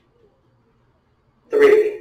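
Quiet room, then about one and a half seconds in a short, loud vocal sound from a person, lasting about half a second.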